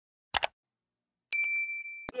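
Subscribe-button animation sound effects: a short mouse-click sound, then about a second later a single bright bell-like ding that holds one high pitch.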